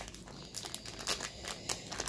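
Crinkly plastic snack-cake wrapper being handled and torn open, a run of irregular crackles.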